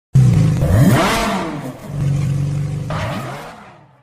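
Car engine revving: it starts suddenly, the pitch climbs steeply about a second in, holds steady, climbs again near the end and fades out.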